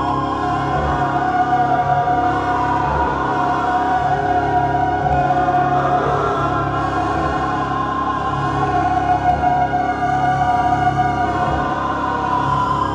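Live electronic drone music from effects pedals and a mixer: dense layers of steady, sustained tones, with a low pulse underneath that comes and goes.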